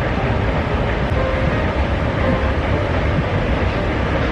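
Steady low rumble of an airport moving walkway being ridden, with no clear breaks or impacts.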